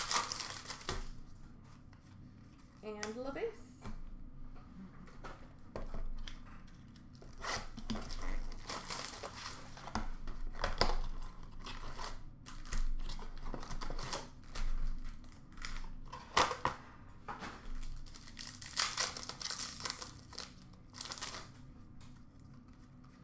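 Upper Deck hockey card pack wrappers being torn open and crinkled, with cards shuffled and handled in irregular rustling bursts.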